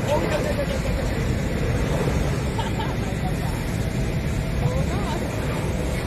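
Boeing 787 jet engines at takeoff power: a steady, loud rumble as the airliner accelerates down the runway and lifts off.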